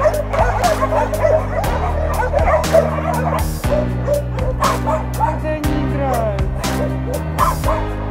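Many kennelled dogs barking and yelping at once, a dense, overlapping din of barks, with background music beneath it.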